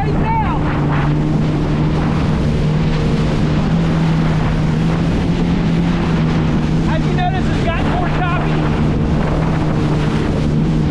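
A Yamaha VX Cruiser HO WaveRunner's 1.8-litre four-stroke engine runs at a steady cruising speed, a constant drone that holds one pitch throughout. Wind buffets the microphone and spray hisses off the hull. A brief wavering higher sound comes just after the start and again about seven seconds in.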